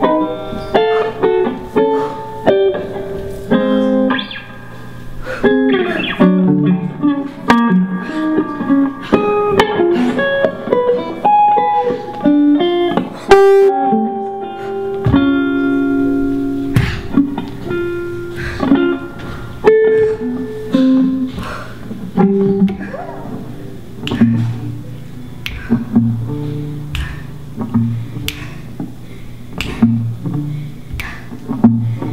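Solo guitar played live, a plucked melodic line of single notes that ring and fade. It turns sparser about two-thirds of the way through, with lower notes and sharp taps.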